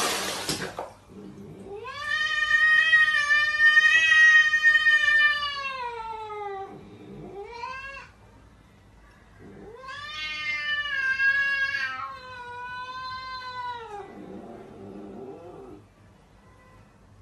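Domestic cat yowling (caterwauling) in long, drawn-out calls that swell and then fall away in pitch. There is a long one of about five seconds, a brief one, another of about four seconds, then a lower, shorter one near the end.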